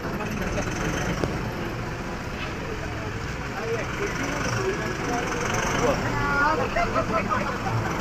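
Safari vehicle's engine running steadily, with people talking quietly over it.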